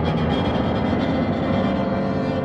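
Chamber music: bowed strings holding a long, dense sustained chord with a strong low end.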